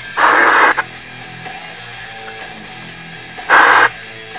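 Two short, loud bursts of static hiss from a CB radio's speaker, one just after the start and one near the end, with faint guitar music underneath.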